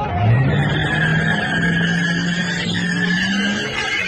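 A car engine revving up in the first half second and then held at high revs, with tyres squealing as the car drifts round on the pavement.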